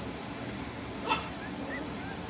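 Four-week-old standard schnauzer puppies whimpering faintly, with a few short high squeaks near the end.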